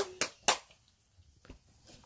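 Hands clapping: three sharp claps within the first half second, then one faint clap about a second later.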